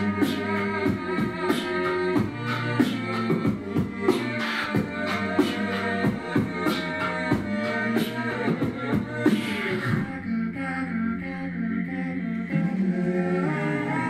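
Live vocal looping: a loop station layers held, repeating vocal parts, a low bass line with harmonies above it, under live beatboxed percussion into a handheld mic. About ten seconds in the beatbox drops out and the looped vocal layers carry on alone.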